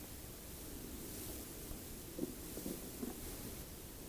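Faint room hiss with a few soft knocks and rustles about two to three seconds in: hands handling parts on a workbench.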